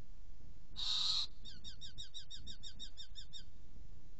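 Eurasian hobby calling: one harsh, screechy call about a second in, then a quick run of about a dozen clear notes, some seven a second, that stops near the middle of the clip.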